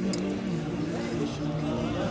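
Indistinct voices over the public-address system and from the gathering, with a steady hum underneath.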